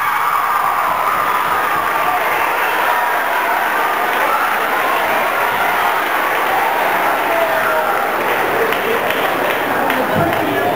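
Audience applauding and cheering, with voices calling out over the clapping.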